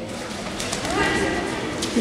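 Voices shouting in a large, echoing sports hall during a kickboxing bout, with a few sharp knocks of gloved strikes landing and a heavier thump at the end as the fighters close in.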